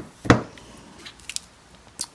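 Handling noise from a plastic-cased clamp meter being turned over in the hand: one sharp click about a third of a second in, then two faint clicks about a second later.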